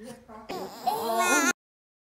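Young baby vocalizing loudly in a high, wavering voice for about a second. The sound cuts off abruptly at a second and a half.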